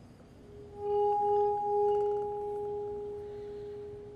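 Wine glass partly filled with water ringing as a wet finger rubs around its rim: one steady singing tone that swells in about a second in, wavers briefly, then slowly fades.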